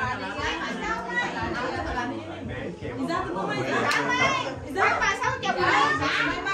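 Several people talking over one another: overlapping chatter.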